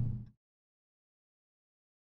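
Near-total silence: a low rumble of engine and road noise inside the car's cabin fades out within the first third of a second, leaving digital silence.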